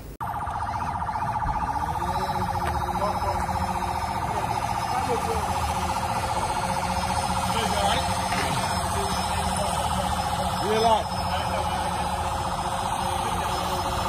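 A vehicle siren sounding continuously with a fast, even warble, steady in level throughout. Faint voices call out now and then over it.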